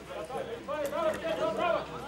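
Indistinct men's voices talking and calling out, not clearly worded, over the open-air background of a football pitch.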